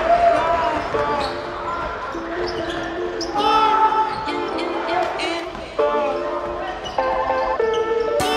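Court sound of a basketball game in a sports hall: the ball bouncing, sneakers squeaking on the floor in short rising-and-falling chirps, and players calling out.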